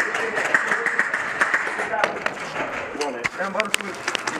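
Indistinct voices over a busy noisy background, with a few sharp clicks close together near the end.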